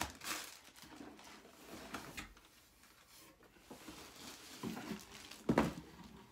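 Rustling and crinkling of plastic packaging and cardboard as items are handled and lifted out of a shipping box, with a single thump about five and a half seconds in.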